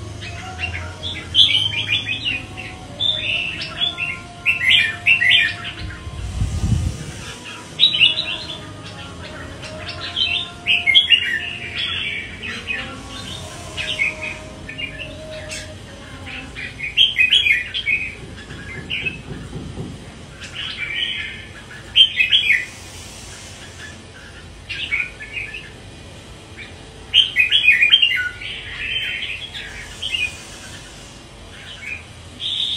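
Red-whiskered bulbul singing: short, bright warbled phrases repeated every few seconds, with brief pauses between them.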